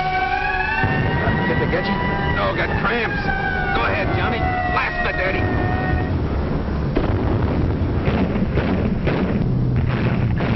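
An air-raid siren wails in several parallel tones, slowly rising and falling in pitch, and fades out about six seconds in. Under it runs a loud low rumble, with repeated sharp bangs through the middle and again near the end.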